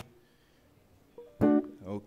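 About a second of near silence, then a guitar sounds during a soundcheck: a faint note, then a short, loud plucked chord about a second and a half in.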